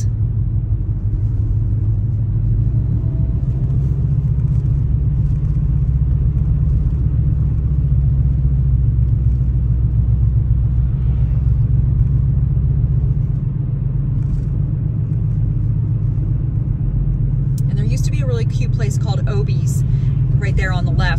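Steady low rumble of a car's engine and tyres, heard from inside the cabin while driving along a road.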